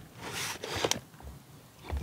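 Plastic ammo can and its contents being handled: a short scraping rustle, then a light click about halfway through.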